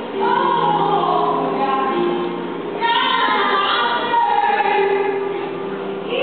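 A gospel song with choir singing, with a new sung phrase coming in about a quarter second in and another near the middle.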